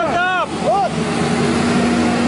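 Street traffic noise, with a brief voice at the start and a steady low hum setting in about a second in.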